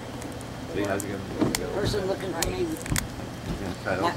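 A few sharp clicks and crackles of a plastic-wrapped compressed T-shirt package being handled, under faint voices in the background.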